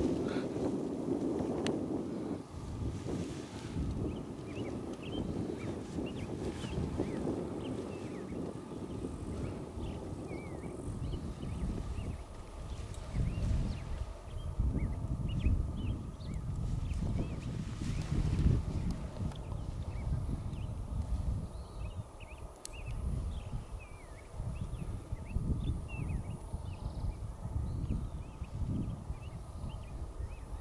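Wind gusting over the microphone, rising and falling in strength, with faint high chirps scattered through it.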